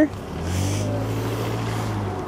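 A truck's engine running close by: a steady low drone whose pitch rises slightly.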